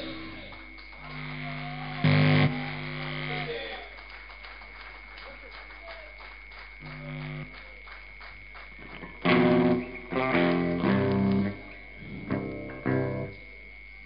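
Electric guitar through a stage amplifier, sounded in a few short bursts of held notes and chords between songs, over a steady high-pitched amp whine. The busiest stretch of playing comes about two-thirds of the way through, and it falls quiet shortly before the end.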